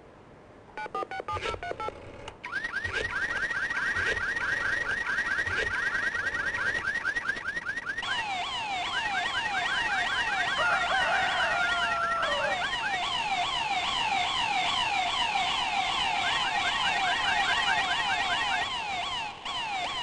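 Electronic siren-like alarm sound effect: a few beeps about a second in, then fast, continuously repeating rising sweeps that grow fuller about eight seconds in. It is played as a last-chance urgency signal for callers just before the programme ends.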